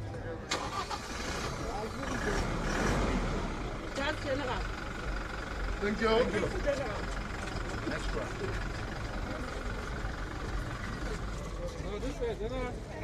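Police van's engine starting about half a second in, then idling steadily, with voices around it.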